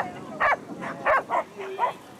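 A dog barking repeatedly in short, sharp barks, about five in two seconds, the excited barking of a dog running an agility course.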